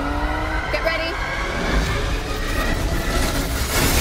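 A car engine running hard through an acceleration, its pitch climbing slowly, with a rushing whoosh that swells near the end.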